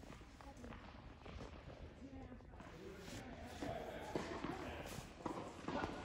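Faint, indistinct talking with light footsteps on a hard tennis court.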